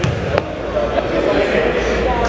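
A basketball bounced on a hardwood gym floor as a free-throw shooter dribbles at the line, one sharp bounce a little under half a second in. Voices murmur in the gym throughout.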